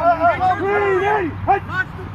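Men's raised voices calling out on the field as players set up at the line before a snap.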